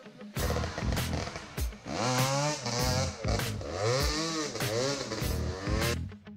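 Dirt bike engine revved in several short rises and falls over background music with a steady beat.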